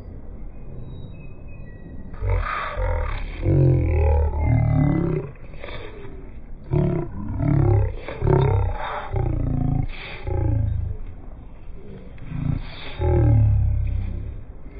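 A man's deep voice, close to the microphone, in loud bursts that glide up and down in pitch, starting about two seconds in.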